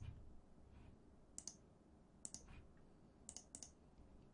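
A few faint computer mouse clicks in near silence, spread over the few seconds.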